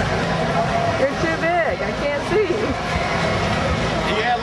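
Busy nightlife street noise: several voices talking and calling out over a steady hum of car traffic passing close by.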